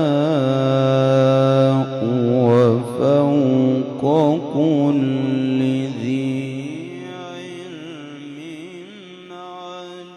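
A solo male voice in melodic Quran recitation, drawing out a word in a long melismatic line. It holds a note, breaks into quick ornamented turns, and grows softer in the last few seconds.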